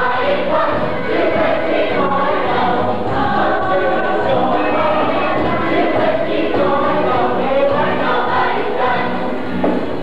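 A large stage chorus singing a musical number together with instrumental accompaniment, many voices at once at a steady level.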